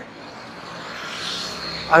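Steady background hiss with no distinct event, swelling slightly in the middle.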